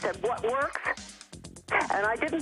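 A voice over background music with a fast steady beat, broken by a brief pause in the voice just past the middle.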